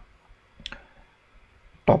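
A few faint, scattered clicks at a computer, the clearest about two-thirds of a second in; a voice starts right at the end.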